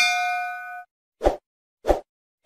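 Bell-like notification chime sound effect ringing with several clear tones and fading within about a second, then two short pop sound effects about two-thirds of a second apart.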